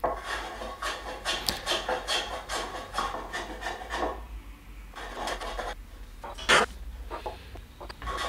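Small palm plane shaving the sawn side of a padauk guitar headstock, in a quick series of short cutting strokes, to true the edge straight and square. There are brief pauses between runs of strokes and one louder stroke near the end.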